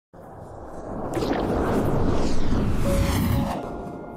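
Cinematic intro sound effect: a deep rumble with whooshing sweeps swells up over about two seconds, peaks, then dies away about three and a half seconds in, as a soft held tone of music begins.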